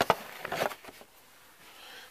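Handling noises: a sharp click at the very start, then faint rubbing and scraping that die away to near quiet.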